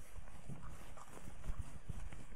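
Whiteboard eraser wiping a whiteboard in quick back-and-forth strokes: irregular soft knocks and rubbing, with one louder knock about one and a half seconds in.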